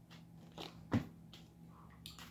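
Tarot cards handled in the hands as one is drawn from the deck: a few short clicks and snaps, the loudest about a second in, over a faint steady low hum.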